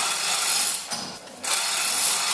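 Manual chain hoist being hauled to lift a boat hull, its chain rattling and clicking through the hoist in two spells with a short pause about a second in.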